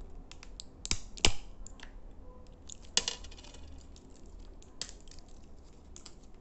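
Fingers tapping and handling small plastic objects right at the microphone: a series of sharp, irregular clicks and taps, the loudest about a second in and again at three seconds.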